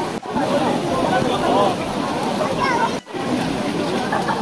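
Background chatter of many people's voices over running and sloshing stream water at a crowded swimming spot, broken by two brief cut-outs, one just after the start and one about three seconds in.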